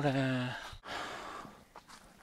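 A man's voice ends a word, then a breathy sigh follows and fades out over about a second; a faint click comes near the end.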